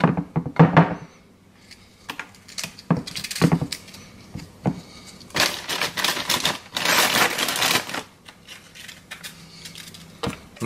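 Light clicks and taps of vanilla wafer cookies being handled and set down on a pudding layer in a glass baking dish, with a denser stretch of rustling a little past halfway.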